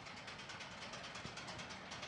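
Faint, steady machine noise with a fine, rapid rattle.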